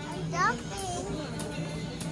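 A young child's brief high-pitched vocal sound, rising in pitch, about half a second in. It is heard over a busy market's background of distant voices and music.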